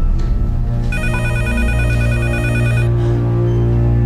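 A desk telephone ringing once with an electronic warbling ring that starts about a second in and lasts about two seconds, over a low, steady music score.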